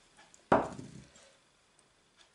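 A single dull knock against a glass mixing bowl about half a second in, with a short ring dying away, after a couple of faint clicks.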